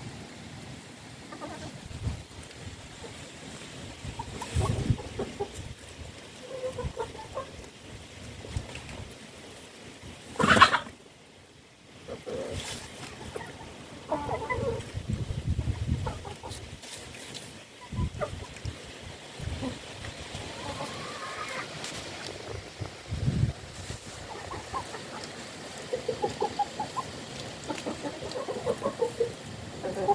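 A flock of chickens clucking on and off as they forage, with one loud, short call about ten seconds in, followed by a brief lull.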